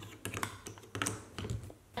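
Several light, irregular plastic clicks and taps as a USB power adapter is pushed into a wall outlet, over a faint low hum.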